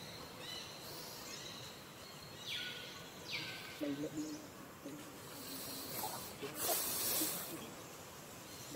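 Outdoor woodland ambience: faint chirps, two short hissing rustles in the middle, and a louder rush of noise near the end.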